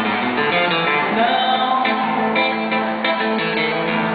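A live samba song: a woman singing over an acoustic guitar accompaniment.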